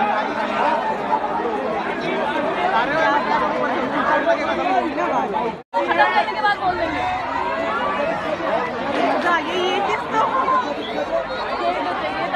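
Chatter of a crowd: many people talking over one another. It is broken by a sudden silent gap lasting a fraction of a second about halfway through.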